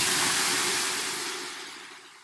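Water ladled onto the hot stones of a sauna heater, hissing into steam; the hiss is loud at first and fades away over about two seconds.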